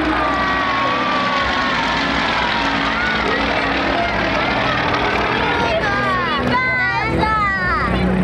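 Nine-cylinder radial engines of Yak-52 aerobatic planes flying overhead in formation. A loud drone whose pitch glides slowly down, then swings up and down more quickly near the end as the planes manoeuvre.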